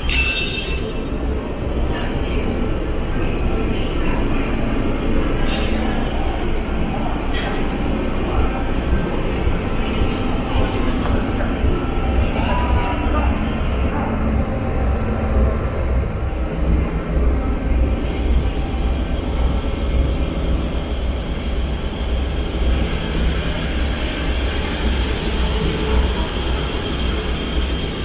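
Diesel locomotive idling at the head of a container train, with a continuous low rumble.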